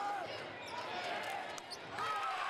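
Basketball dribbled on a hardwood gym floor during play, a few sharp bounces over the steady chatter and calls of a crowd of spectators.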